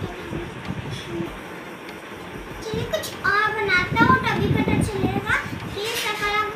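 Children's high-pitched voices, calling and chattering, loud from about halfway through; only faint background noise before that.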